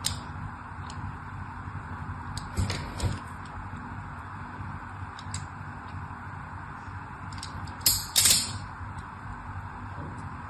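Thin blade scoring lines into the surface of a bar of soap: light, crisp scratching strokes, the loudest about three seconds in and about eight seconds in.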